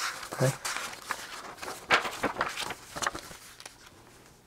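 Printed paper sheets rustling and crackling as they are handled and turned, a run of irregular short crackles that dies away near the end.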